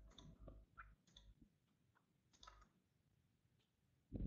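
Near silence with a few faint, short clicks, several in the first second and a half and one more about two and a half seconds in.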